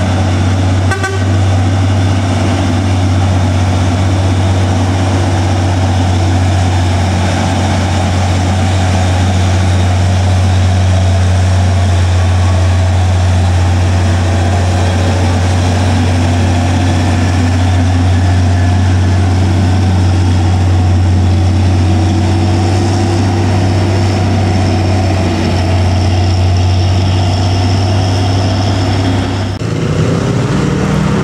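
Diesel engine of a loaded Hino 500 three-axle truck working hard up a steep climb, holding a steady low drone at constant revs.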